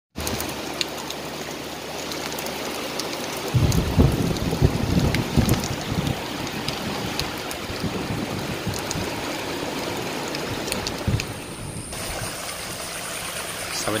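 Heavy rain pouring down on corrugated metal roofs, a steady hiss dotted with sharp drop ticks. From about three and a half seconds in, low rumbling surges sit beneath it for a few seconds.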